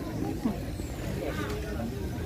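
Voices of people talking nearby, over a steady low outdoor rumble.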